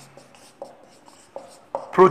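Marker pen writing on a whiteboard: a few short, faint strokes with pauses between them.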